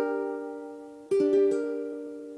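A ukulele chord rings and dies away, then a second, different chord is strummed about a second in and rings on.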